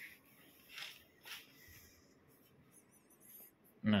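A quiet stretch with a few soft footstep scuffs on a tiled floor in the first second and a half. Faint high wavering chirps come about three seconds in.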